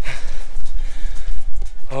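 Loud, gusty low rumble of wind buffeting an action camera's microphone during a hike, with background music underneath.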